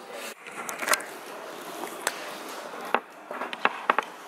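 Steady background hiss of an indoor space, with a few light, sharp clicks scattered through it.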